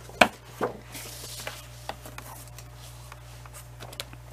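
Sheets of thick patterned paper handled and laid onto a plastic paper trimmer: a sharp tap shortly after the start, then soft rustling and a few light knocks as the stack is lined up.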